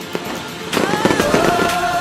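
Fireworks crackling and popping, starting about two-thirds of a second in, over music.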